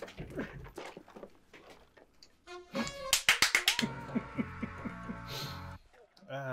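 Film soundtrack playing: a quick run of sharp, loud hits about three seconds in, then a couple of seconds of music with a bouncing low melody.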